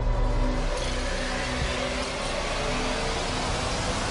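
TV show title theme: a loud, steady rushing whoosh over a low bass drone, with a few faint held tones underneath.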